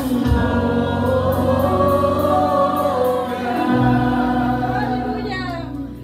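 A small mixed group of men and women singing a Christian worship song together into microphones, holding long notes over a steady low backing. The sound dips briefly near the end.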